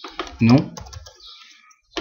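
Computer keyboard keystrokes: a short run of quick key taps as a reply is typed at a command-line prompt.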